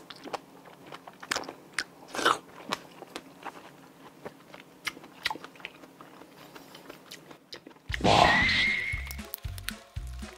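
Close-miked mouth sounds of chewing a large raw oyster: faint wet clicks and smacks, many of them in a row. Near the end comes a louder rushing sound with a short whistle-like tone.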